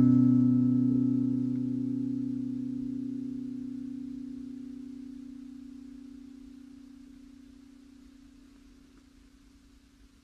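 Music: a final guitar chord ringing out with no new notes, fading steadily and slowly to almost nothing over about ten seconds.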